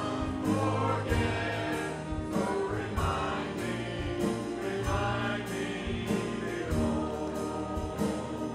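Church choir of mixed men's and women's voices singing a gospel hymn with band accompaniment: sustained bass notes underneath and a drum keeping a steady beat.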